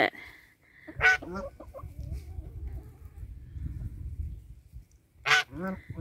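Domestic geese honking: one loud honk about a second in, a second near the end, each followed by a few shorter calls.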